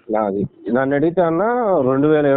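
A man's voice heard over a phone line, speaking in long, drawn-out sounds after a short utterance near the start.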